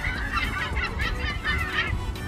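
A large flock of gulls calling at once, many short overlapping squawks.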